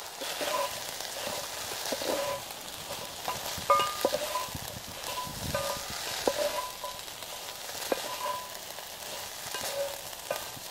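Diced potatoes, carrots and onions sizzling in a cast iron deep pan while a spatula stirs and turns them. The spatula gives sharp scrapes and clinks against the iron, the loudest a little under four seconds in.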